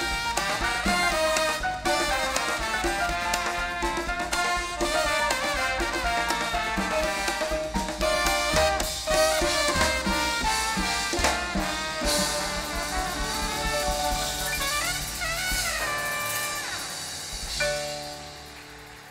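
Live Latin dance band playing an instrumental passage, its horn section of trumpet, trombone and saxophone carrying the lines over congas and drum kit. The music dies down near the end.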